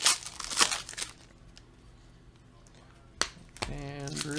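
Foil trading-card pack crinkling and tearing open in the hands during the first second, then quiet, with one sharp click about three seconds in.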